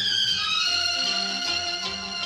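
Late-1950s Bollywood film song playing from a vinyl record, with violins prominent in sustained phrases that slide downward over a bass line.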